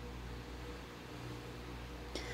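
Steady low hum with a faint even hiss: room tone, with no distinct handling sounds.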